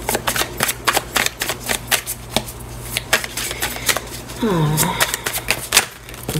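A deck of tarot cards being shuffled by hand: a rapid, irregular run of crisp card clicks.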